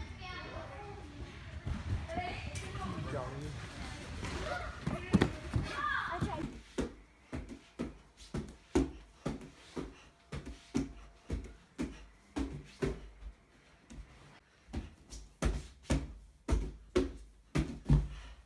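Voices in a gym for the first several seconds. Then a steady run of thumps, about two a second, as a gymnast's hands strike the padded vinyl top of a pommel-horse mushroom trainer while he swings circles.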